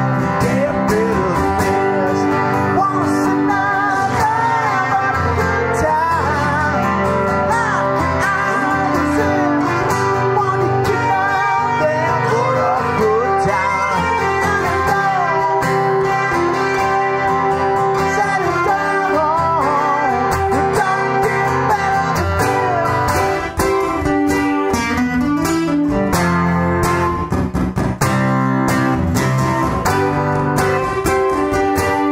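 Live acoustic guitar duo: a lead acoustic guitar solo full of bent notes over a strummed acoustic rhythm guitar, with choppy stop-start strumming near the end.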